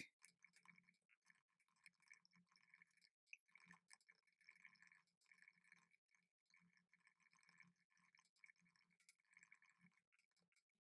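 Very faint, rapid typing on a laptop keyboard: a steady patter of light key clicks with brief pauses.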